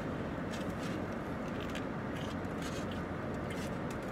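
Steady low hum inside a car cabin, with a few faint small clicks and rustles.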